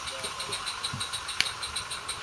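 16mm-scale live steam garden-railway locomotive running with rapid, even exhaust beats while hauling a heavy load, with one sharp click about one and a half seconds in.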